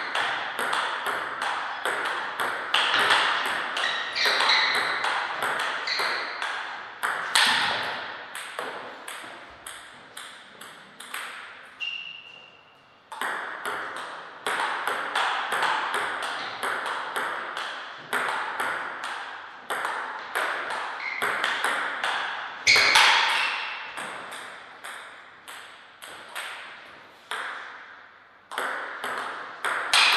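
Table tennis rallies: the celluloid-type ball clicking sharply off the table and the rackets in a quick, even back-and-forth of two to three hits a second. The rallies are broken by short pauses between points, the longest about twelve seconds in.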